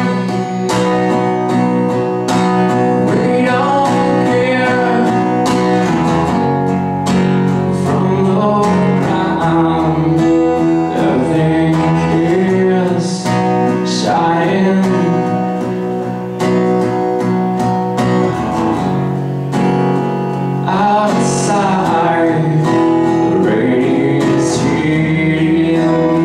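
A man singing to his own acoustic guitar, strummed in a steady rhythm, in a solo live performance.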